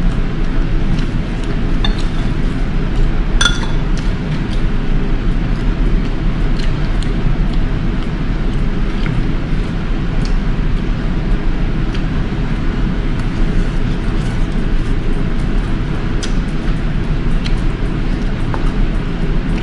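Metal spoon and fork clinking against a ceramic bowl and a noodle cup while eating, with scattered light clicks and one brighter ringing clink a few seconds in, over a steady low hum.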